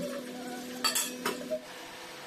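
Steel utensils clinking against each other about four times as they are handled at a kitchen sink, over a steady hum that cuts off about a second and a half in.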